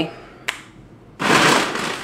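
A brief click, then a little past one second in, plastic packaging crinkling loudly as it is picked up and handled.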